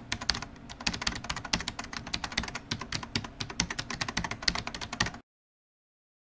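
Computer-keyboard typing sound effect: a rapid, uneven run of key clicks that cuts off suddenly about five seconds in.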